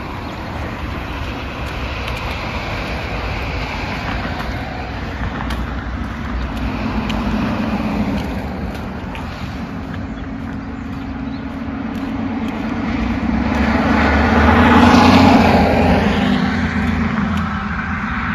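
Road traffic passing: a steady wash of car tyre and engine noise that swells twice as vehicles go by, the louder pass a few seconds before the end.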